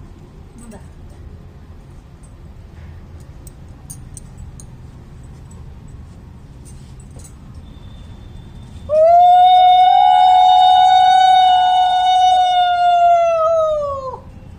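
A conch shell (shankha) blown in one long, loud, steady note lasting about five seconds, starting about nine seconds in, its pitch sagging as the breath runs out. A few faint clinks come before it.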